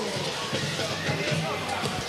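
Football stadium ambience through the broadcast microphones: a steady crowd hubbub with faint distant voices carrying over it.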